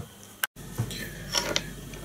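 Quiet handling at a fly-tying vise: a short click, a sudden cut-off about half a second in, then a couple of faint small ticks from tools and thread near the middle.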